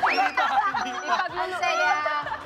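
Several people talking and laughing over one another.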